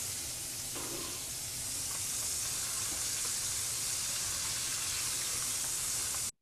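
Flour-coated oysters deep-frying in a pan of cooking oil at 350 degrees, a steady sizzle as they finish golden brown and are lifted out.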